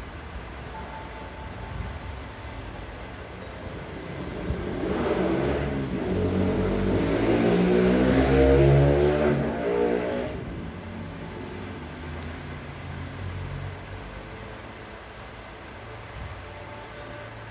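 A motor vehicle passing by, its engine note rising in pitch as it speeds up. It swells from about four seconds in, is loudest around eight seconds, and fades away by about ten seconds, leaving low background noise.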